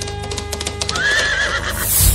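Bass-boosted opening of a Malayalam devotional song: a sustained drone over heavy bass with quick clip-clop hoofbeats. A horse whinny, wavering up and down, sounds about a second in as a sound effect.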